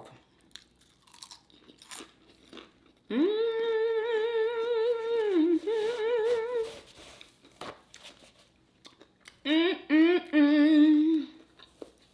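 A woman humming a closed-mouth 'mmm' while eating crispy lumpia: one long wavering hum about three seconds in, then a shorter, lower one near the end. Faint crunching and paper-towel rustling can be heard between the hums.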